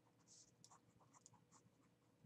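Near silence: faint room tone with a few scattered soft ticks.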